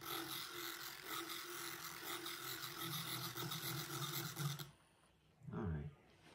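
Small handheld electric mixing wand running steadily in a mason jar, whirring through yogurt starter, half-and-half and inulin powder to smooth out lumps; it switches off about a second before the end.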